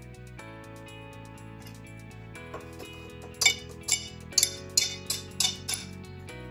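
Background guitar music, and from about three seconds in a run of about seven sharp ceramic clinks, roughly two a second, as scored strips of ceramic subway tile are snapped off by hand.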